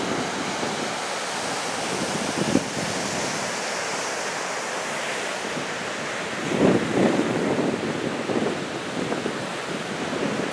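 Ocean surf from a 4 to 5 foot swell breaking and washing onto the beach, a steady rushing noise, with wind buffeting the microphone and a stronger gust about two-thirds of the way in.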